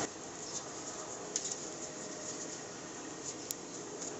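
Faint handling sounds of a wax candle being worked loose inside a metal candle mould, with a few light clicks and taps over a steady low hiss.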